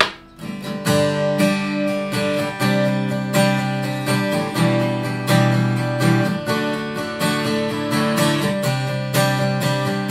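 Takamine 2010 LTD Miyabi dreadnought-cutaway acoustic guitar, Sitka spruce top with Indian rosewood back and sides, strummed in a steady rhythm of chords that change as it goes. It opens with one sharp struck chord, then the strumming settles in from about a second in.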